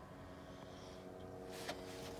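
Faint steady mechanical hum of several held tones, with a single short click about one and a half seconds in.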